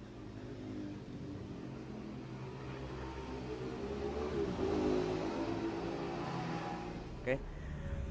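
Two-stroke motorcycle engine running, its note growing louder over the first few seconds and shifting in pitch around the middle before settling. A brief sharp sound comes just before the end.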